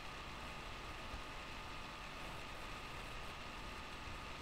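Steady low hiss of background noise with a faint high, steady tone running through it, and no distinct sounds.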